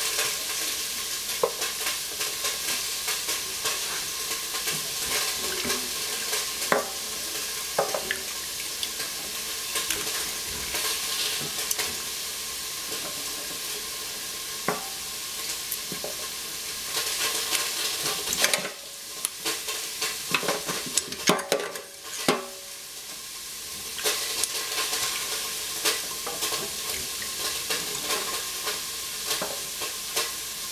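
Baby squash being trimmed by hand with a kitchen knife, with scattered sharp clicks and knocks as the knife cuts and pieces go into a steel pot, over a steady hiss. The hiss drops for a few seconds past the middle, where the clicks come thicker and louder.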